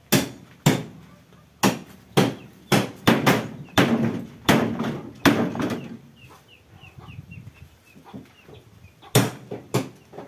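Hard blows struck one after another, about ten in the first five seconds, as scrap refrigerators are broken up with a hatchet. A chicken clucks in a quick run of short notes around seven seconds in, and two more blows land near the end.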